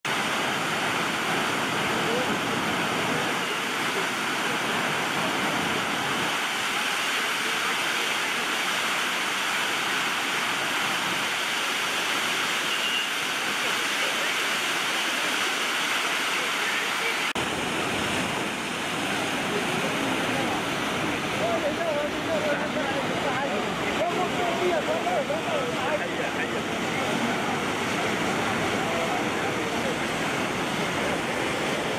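Muddy floodwater rushing through a swollen wadi and churning over a low concrete crossing: a loud, steady rush of turbulent water. In the second half, people's voices rise over the water.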